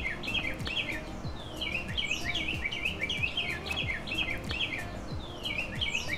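Songbirds chirping: a steady run of quick, repeated down-slurred chirps, several a second.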